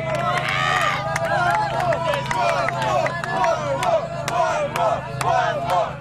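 A crowd of people shouting and cheering, many voices at once, over a fast, steady beat of sharp clicks from techno music.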